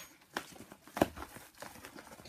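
Packaging rustling and crinkling as a tripod is handled and unpacked, with a few light clicks and one sharp knock about a second in.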